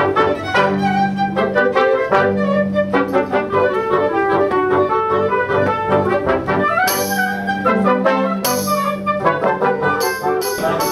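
Small classical ensemble of strings and brass playing a Christmas piece, with sustained brass and string notes. Near the end a hand-held jingling percussion instrument is shaken in two short bursts.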